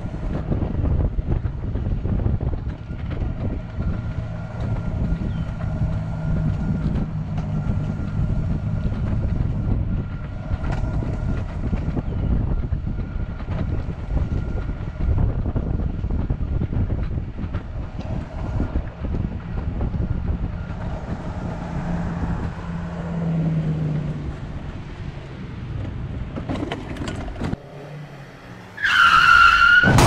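Quickie power wheelchair driving along a concrete sidewalk: a steady rumble of its wheels on the pavement with a faint steady whine from its electric drive motors. Near the end the sound drops, then a title-card sound effect rises in pitch and ends in a loud burst.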